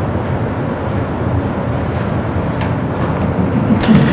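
Steady room noise: an even low rumble and hiss with no distinct events.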